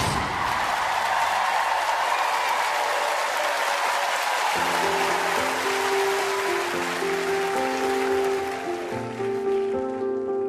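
Studio audience applause that fades away, then a grand piano begins a slow introduction about four and a half seconds in, with long held notes and chords.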